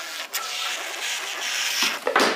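HPRT T20 thermal label printer printing and feeding out a label: a steady mechanical whir of about a second and a half.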